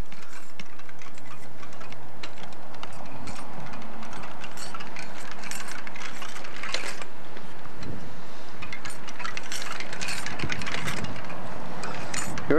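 A child's bicycle with training wheels rolling along a concrete sidewalk, with scattered small clicks and rattles, over a steady rush of wind on the microphone.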